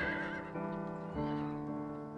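A horse whinnying over soft piano music: a quavering neigh right at the start, then a fainter one a little over a second in.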